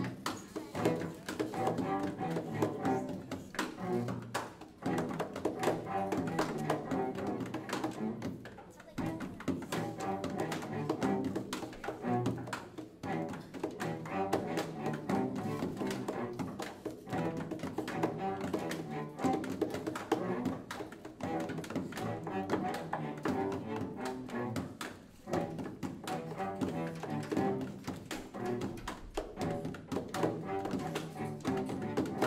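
A student cello ensemble playing a short student-composed piece: a repeating bowed tune over a drummed percussion part, with brief dips a few times.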